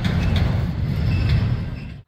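Outdoor street noise: a steady low rumble with a hiss above it, cutting off suddenly near the end.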